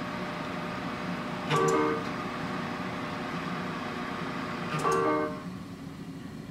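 GE Monogram range's electronic oven control chiming twice, about three seconds apart, each a short musical tone of about half a second, as the ovens are switched off. A steady background hum drops away near the end.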